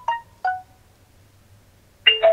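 Electronic Bluetooth pairing chime: two short, clean beep notes stepping down in pitch in the first half-second, ending a tune that rose just before. Then quiet.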